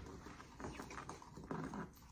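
A wooden spatula stirring dry bath bomb powder in a ceramic bowl: faint, quick scraping and tapping clicks against the bowl.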